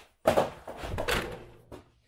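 Skateboard dropped onto a concrete floor: a loud clack as it lands about a quarter second in, then a second of rough rumbling as it settles and rolls, and a smaller knock near the end.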